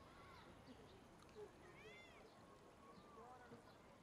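Faint, distant voices calling over quiet outdoor background, a few short calls that rise and fall in pitch, the clearest one about halfway through.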